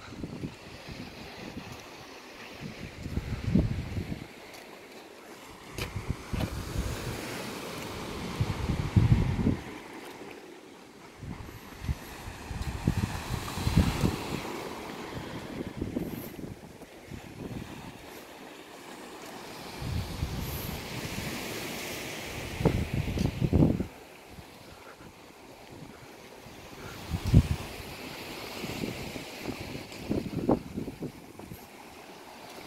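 Wind gusting against the microphone in uneven rumbling buffets, over a soft, swelling wash of sea surf.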